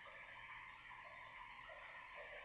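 Near silence: faint room tone and microphone hiss.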